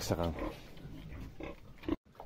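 A domestic pig grunting in its pen, low and rough, with a short louder grunt near the end.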